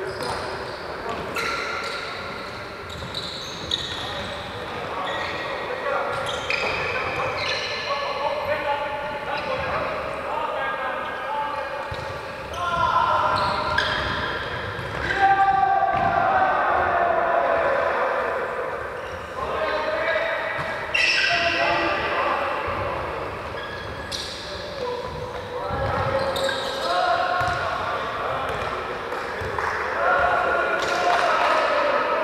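Indoor five-a-side football game in a large sports hall: players shouting to each other, with echo, and the ball thudding and bouncing on the wooden court again and again.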